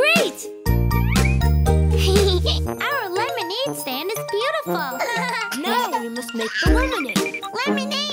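Bouncy children's cartoon background music with jingly tones, playing under cartoon children's voices; a bass line runs for the first few seconds and then drops out.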